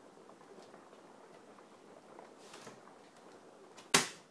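Faint room tone, then near the end a single sharp clack: the loose-hinged lid of a Dell Inspiron 8100 laptop drops shut onto its base, the hinges too worn to hold it up.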